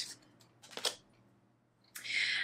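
A single brief tap as a tarot card is laid down on a wooden table, a little under a second in; otherwise quiet.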